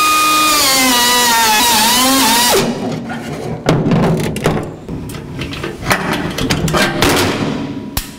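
Handheld cutoff tool cutting through the weld that stuck a pair of vise grips to a steel pedal bracket. It gives a loud high whine whose pitch sags and wavers as it bites, and it stops suddenly about two and a half seconds in. Several seconds of metal clanks and knocks follow.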